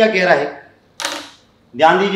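A single short, sharp click about a second in, between stretches of a man speaking.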